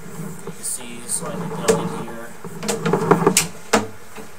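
A person talking indistinctly in short stretches, with a couple of sharp knocks, one about halfway through and one near the end.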